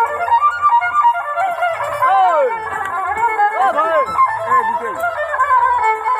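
Dance music with a melody of sliding, arching notes over a faint bass beat.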